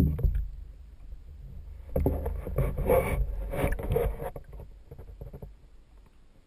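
Water splashing and churning, heard from underwater through a GoPro's waterproof housing. It opens with a sharp knock, then about two seconds of dense, crackling splashing about two seconds in, which fades out.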